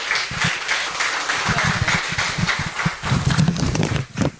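Close rustling and handling noise with irregular low knocks and thumps, as of cloth and a microphone being handled.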